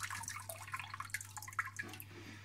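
Water trickling and dripping off a soaked aquarium filter foam block held just above the tank, splashing into the water below, thinning out near the end.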